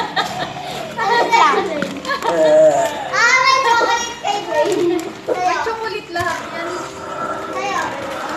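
Children's excited, high-pitched voices and calls, with laughter, loudest and highest a few seconds in.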